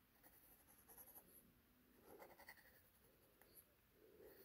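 Faint scratching of a Pilot Varsity disposable fountain pen's steel nib on paper as it draws lines, with a louder stretch of strokes about two seconds in.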